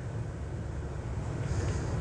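Steady low background hum of room noise, with no distinct handling clicks or knocks.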